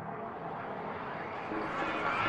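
A soft rushing whoosh that slowly swells: the build-up of a channel logo intro sound effect.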